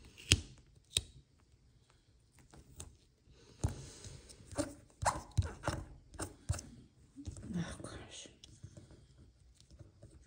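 Planner sticker being peeled from a sticker sheet and pressed down onto a paper planner page: two sharp taps near the start, then a run of quick taps and paper rustles in the middle.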